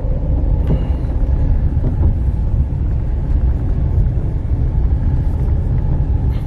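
Steady low rumble of a car driving, heard from inside the cabin: road and engine noise.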